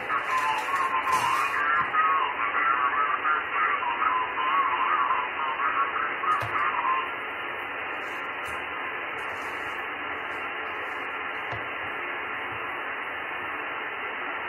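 Amateur radio receiver's speaker playing the RS-44 satellite downlink in single sideband: a garbled, wavering voice-like signal for about the first seven seconds, then only steady receiver hiss.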